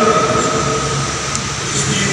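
Slow church music in a large reverberant hall: a held chord of sustained notes fading out over a steady rumble, with new low notes coming in near the end.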